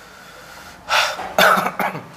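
A man coughing and clearing his throat: three short rough bursts in the second half.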